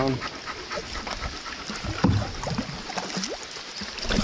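A dog whimpering in a few short whines, one rising in pitch about three seconds in, over the steady hiss of heavy rain falling on the lake and canoe.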